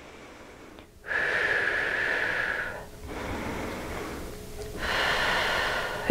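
A woman breathing slowly and audibly while holding a standing yoga pose: three long breaths of about one and a half to two seconds each, the first with a slight whistle.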